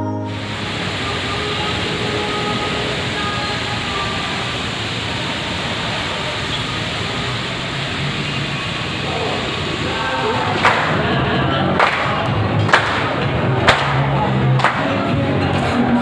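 Busy restaurant room noise, then from about ten seconds in a group of restaurant staff clapping in time, about once a second, with singing.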